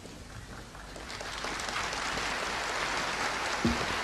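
Audience applause in a large hall, swelling from about a second in, with a short low thump near the end.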